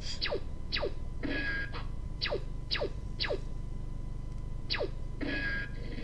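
Presentation slide-animation sound effect: six short zaps that fall quickly in pitch, one as each new path line appears on the slide. Two brief hisses sit between them, over a steady low hum.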